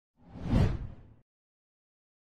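A single whoosh sound effect marking a video transition, swelling up and dying away within about a second, with most of its weight low down.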